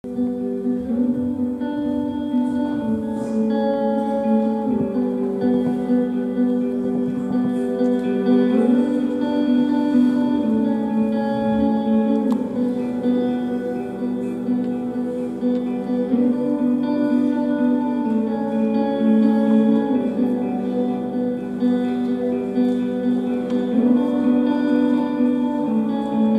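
A live band plays an instrumental passage with electric guitar, bass guitar and keyboard. Sustained chords change about every four seconds in a repeating progression.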